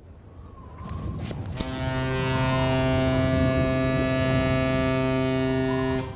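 Outro animation sound effects: a few short clicks about a second in, then a sustained synth chord that swells in and holds steady, falling away near the end.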